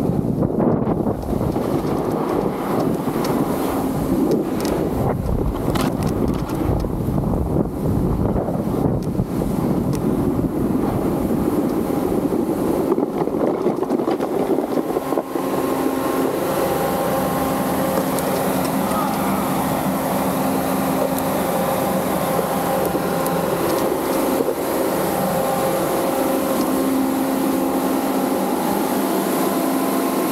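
A snowboard sliding and scraping over packed snow, with wind buffeting the microphone. About halfway through this gives way to a steady mechanical hum with a whine, from a fan-type snow gun running close by.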